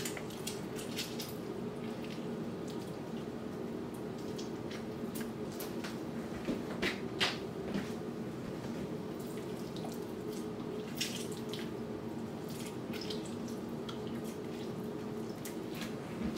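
Butter-based garlic sauce simmering in a stainless steel frying pan, bubbling with scattered small pops and crackles, over a steady low hum.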